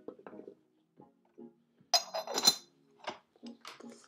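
Soft background music with a quick cluster of bright clinks from ceramic teaware about two seconds in, and a few lighter clinks after, as the teapot and cup are handled while being warmed.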